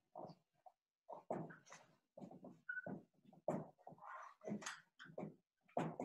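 Dry-erase marker writing on a whiteboard: a quick run of short squeaks and scratches, one per stroke, with a higher held squeak about halfway through.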